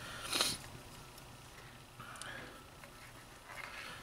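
Faint handling noises: a short rustle about half a second in, then soft scattered rustling as braided PET cable sleeving and the wire are handled over a desk mat.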